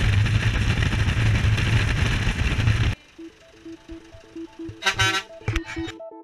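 Truck engine and road rumble heard from inside the open-backed cargo bed, cutting off abruptly about halfway through. Electronic background music with a repeating rhythmic pattern follows, with a short honk-like blast about five seconds in.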